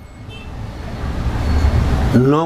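Low rumble of a passing road vehicle, growing steadily louder.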